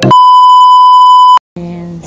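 A single loud, steady electronic beep tone, lasting about one and a half seconds and cutting off suddenly, used as an edit sound over the cut.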